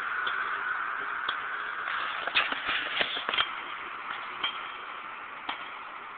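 Scattered light clicks and shuffles from a handheld camera being moved, over a steady hiss of outdoor background noise that slowly fades.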